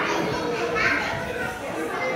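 Background voices of children talking and playing in a busy indoor hall.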